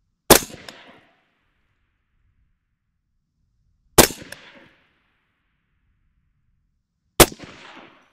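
Three rifle shots from a suppressed AR-15 (Colt 6920 lower, 14.5" barrel, Surefire FA556-212 suppressor) firing 5.56 M193 ball, spaced about three and a half seconds apart. Each is a sharp crack with a short echoing tail.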